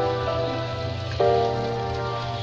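Beaten egg frying in oil in a wok, with a steady sizzle. Background music with sustained chords plays over it; the chord changes about a second in.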